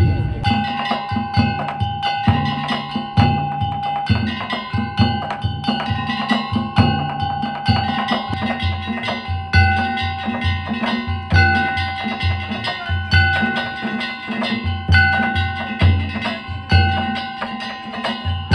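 Kawachi danjiri bayashi festival ensemble: taiko drums beat a steady, driving rhythm under the ringing clang of hand-struck metal gongs (kane).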